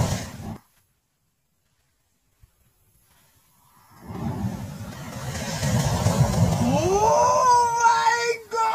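A clay pot packed with match heads flaring up in a burst of fire that cuts off in the first second together with a shout. After about three seconds of silence the same flare comes back slowed down as a deep, low rumble. Near the end a slowed-down shout rises in pitch, is drawn out, and falls away.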